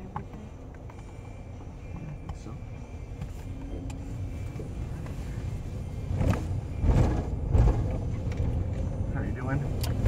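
Engine and road noise inside a car's cabin, a low rumble growing steadily louder as the car drives off, loudest in the second half.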